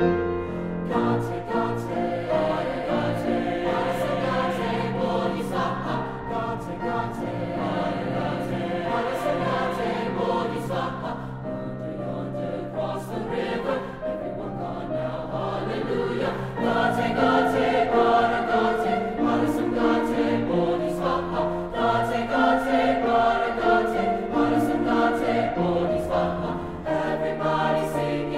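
Mixed choir singing in several parts at once, holding sustained chords that move between notes, growing louder about two-thirds of the way through.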